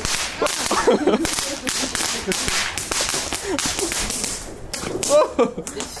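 A small consumer ground firework spraying sparks, making a dense hissing crackle that stops about four and a half seconds in.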